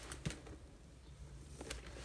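Faint handling of a leather toiletry pouch turned in the hand: two light knocks near the start, over a low steady hum.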